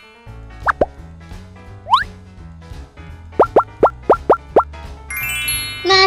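Cartoon 'plop' sound effects over light children's background music: two quick plops, then a longer rising swoop about two seconds in, then a fast run of six plops. Near the end comes a rising run of bright notes.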